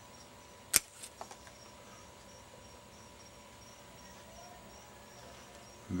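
A single sharp snip of bonsai scissors cutting through a ficus leaf stem, followed by a few light clicks over the next half second. A faint high chirp repeats steadily in the background.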